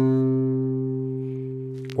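A single C note on an acoustic guitar's fifth string, fretted at the third fret, ringing on after the pluck and fading slowly and evenly.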